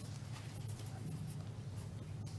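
Meeting-room tone with a steady low hum and faint rustling of papers being handled.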